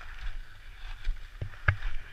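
Skis sliding over packed, groomed snow with a steady scraping hiss, wind rumbling on the microphone underneath. Two sharp knocks come near the end, the second the loudest.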